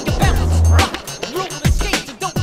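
Hip hop backing track with a deep bass note and kick drums, over the sound of skateboard wheels rolling on asphalt.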